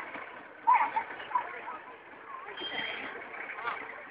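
People talking near the microphone over the low running noise of slow-moving parade vehicles, with a brief high steady tone a little before three seconds in.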